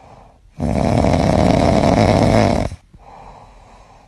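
Snoring: one long snore of about two seconds beginning about half a second in, with fainter breathing sounds before and after it.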